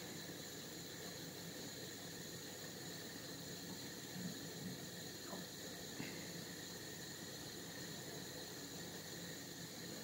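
Quiet, steady hiss of room tone, with a few faint, soft squelches about halfway through as gloved hands roll and press minced meat into a cutlet.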